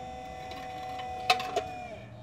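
DC electric motor of a battery-driven hydraulic pump running with a steady whine, which sags slightly in pitch and stops near the end. Two sharp metallic clicks come a third of a second apart just after the middle.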